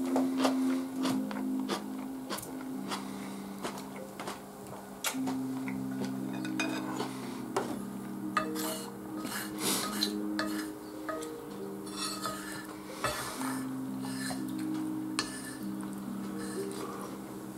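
A spoon clinking and scraping against a plate in short irregular strokes during a meal, over background music of slow, held low notes.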